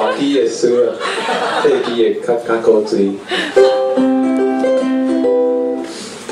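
Ukulele playing: a quick run of single plucked notes, then a chord held for about two seconds near the end.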